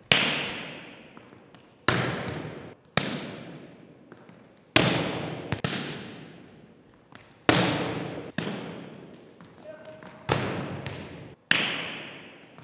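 Volleyball being struck again and again in a passing drill, a hand hitting the ball and forearms passing it back. About nine sharp smacks, mostly in pairs about a second apart, each ringing out in the long echo of a large gymnasium.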